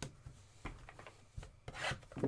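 Hand handling small cardboard trading-card packs in a cardboard hobby box: a few light knocks, then a rubbing scrape as a pack slides out near the end.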